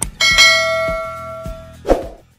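Notification bell chime sound effect: a click, then one bright chime struck just after it that rings on with several clear tones and fades over about a second and a half. A short click sounds near the end.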